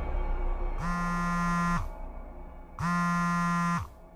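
Mobile phone ringing tone of an outgoing call connecting: two electronic rings, each about a second long with a second's gap between them.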